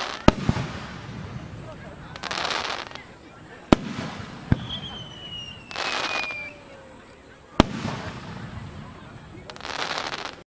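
Aerial fireworks shells bursting, four sharp bangs at uneven intervals. Between the bangs come short bursts of hiss, and a thin whistle falls slowly in pitch partway through.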